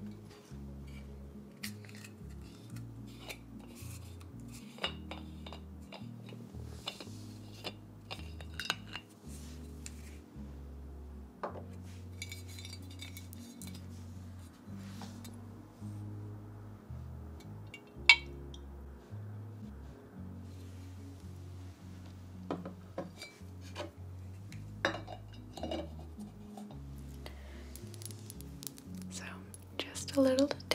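Glass clinks and taps from a glass tequila bottle and glass shot glass being handled to pour a shot, one sharp clink standing out about 18 seconds in. Muffled background music with a stepping bass line plays underneath.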